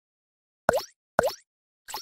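Three short cartoon "plop" sound effects, about half a second apart, each a quick pop with a swooping drop in pitch, from an animated logo intro.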